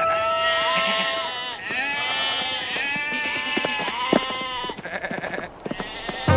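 A flock of sheep bleating: a string of overlapping, wavering bleats over the first five seconds, with a few light clicks near the end.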